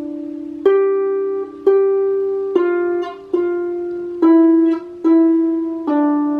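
Lever harp plucked by a beginner in its second lesson: single notes about one a second, each ringing on and fading before the next is plucked.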